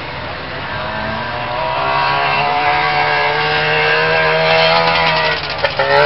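Trabant stock cars' two-stroke engines running hard at high revs as the field races past. The sound grows louder over the first few seconds and falls away shortly before the end.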